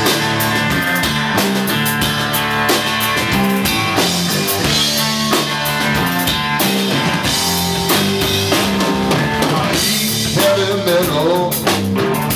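A rock band playing live: a drum kit keeping a steady beat under electric guitars.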